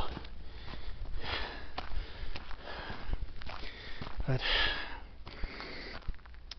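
A hiker breathing while walking uphill: a few audible breaths close to the microphone, the loudest about four and a half seconds in, with faint footsteps on a dirt road.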